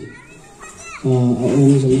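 Children's voices calling faintly in the background during a pause in the address. About a second in, a man resumes speaking into a microphone.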